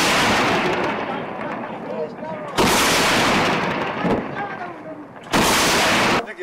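Heavy gunfire: a loud report is still dying away as the clip opens, and two more follow about 2.6 and 5.3 seconds in. Each overloads the recording and trails off in a long echo.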